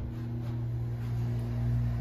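Otis hydraulic elevator's pump motor running with a steady low hum, heard from inside the car as it rises.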